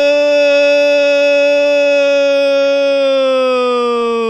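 A football commentator's drawn-out goal cry, one long "gooool" held loud at a single pitch that starts to slide down near the end.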